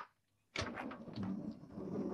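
Van's sliding side door being opened: a sharp click, then from about half a second in a rough rolling slide along its track with several clicks.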